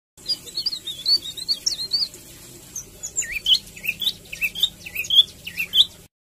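Caged leafbird singing. It opens with a quick run of high twittering notes, pauses briefly about two seconds in, then gives a string of short whistled notes that swoop down and back up.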